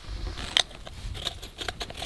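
Small clicks and scrapes of hands handling a metal gas-mask filter canister and its caps, with a sharper click about half a second in and a run of light clicks near the end.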